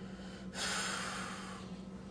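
A person's sharp breath close to the phone microphone, starting abruptly about half a second in and fading away over about a second.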